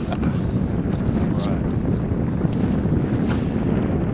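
Wind buffeting the microphone on an open fishing boat: a steady low rumble that does not let up.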